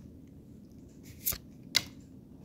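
Trading cards being handled and flipped, with two short, sharp card snaps a little over a second in, the second louder.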